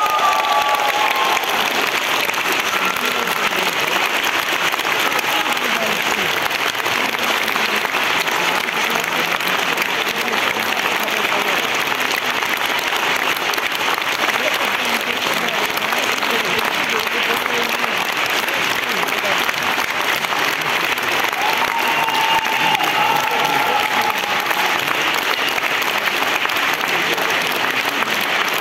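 A concert-hall audience applauding steadily and at length after a song. A few voices rise above the clapping at the start and again about 22 seconds in.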